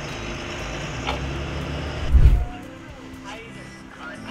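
Low rumble of a bus's engine and tyres heard from inside the moving bus, with a heavy low thump a little past two seconds in. After that the rumble gives way to a quieter background.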